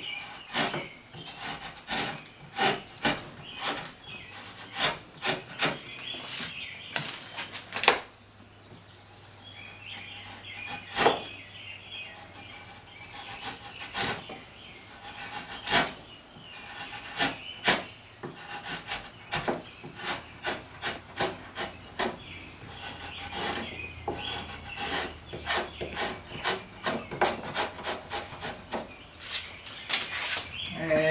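A scorp, a hand hollowing tool, takes short cuts into a wooden chair seat blank, giving sharp scraping strokes roughly one or two a second. There is a brief lull about eight seconds in.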